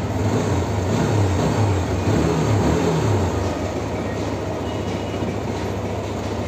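TVS Apache RTR 160 BS6's single-cylinder fuel-injected engine idling steadily at about 1,500 rpm. The idle holds at one speed without missing now that the dust-clogged throttle body has been cleaned.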